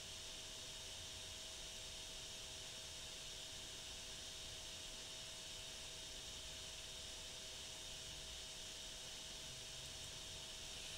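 Steady faint hiss of the recording's background noise, with a faint steady hum beneath it and nothing else happening.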